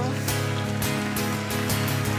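Guitar strumming chords in a steady rhythm, an instrumental bar between sung lines of a song.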